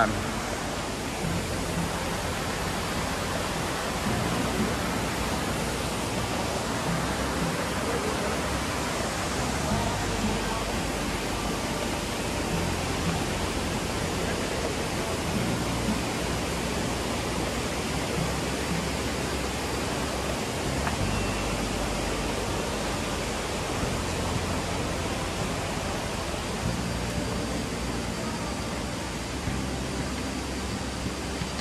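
Steady rush of a rocky mountain stream flowing below, with an uneven low rumble underneath.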